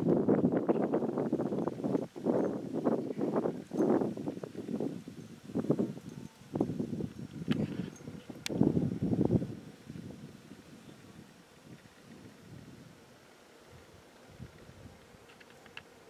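Wind gusting and buffeting across the microphone in irregular surges, with two sharp clicks in the middle; the wind dies down about two-thirds of the way through, leaving a faint, steady background.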